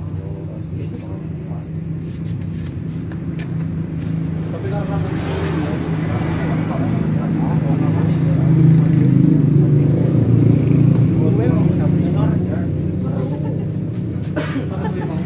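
A motor vehicle engine runs nearby with a steady low hum. It grows louder about eight to eleven seconds in, then eases off, with indistinct voices over it.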